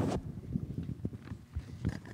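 Footsteps and knocks on a wooden stage floor as people move and sit down, with one sharp knock at the start followed by scattered softer thumps and clicks.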